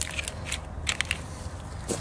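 A few light, scattered clicks and crackles of hands handling the trailer wiring loom where it runs along the bus door's hinged edge.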